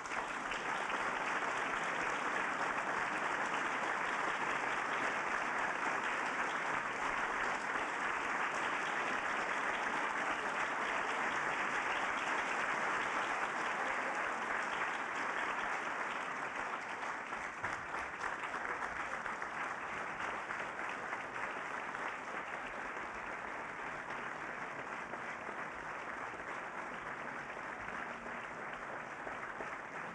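Sustained applause from a large audience, starting abruptly and keeping up for the whole half-minute, loudest in the first half and easing a little after about sixteen seconds.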